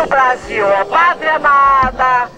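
A woman shouting into a handheld megaphone, her amplified voice loud and coming in short phrases that end on a long held vowel.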